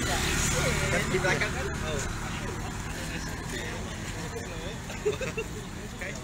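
A car drives slowly past close by, its engine and tyre rumble strongest in the first second or so and then fading, under steady chatter of a large crowd.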